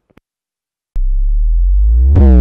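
Electronic logo-sting music: a deep synthesizer tone starts abruptly about a second in, loud and steady, and swells as higher overtones sweep in near the end.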